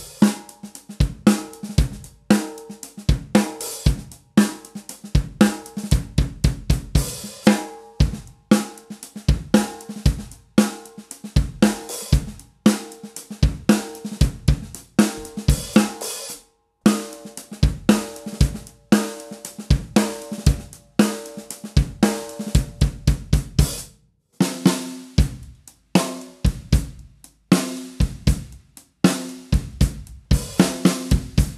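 Drum kit groove with a seamless metal snare, bass drum, hi-hat and cymbals. First the brass-shelled snare with 12-strand wires plays, then the copper-shelled snare, with short breaks between the passages.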